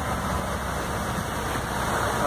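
Truck engine running and road noise heard from inside the cab while driving on a rain-soaked road: a steady low drone under an even hiss from the wet pavement.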